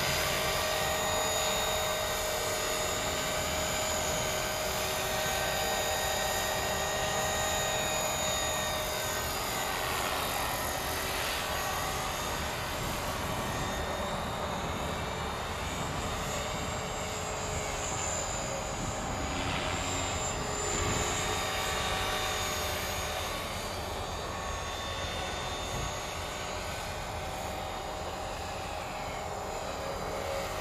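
Electric 450-size radio-controlled helicopter in a Hughes 500 scale body flying: a steady whine from its motor and drive gears over the rotor blade noise. The tone sweeps as it flies past, about ten seconds in and again near twenty.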